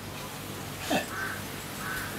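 Short bird calls repeating in the background, roughly one every two-thirds of a second.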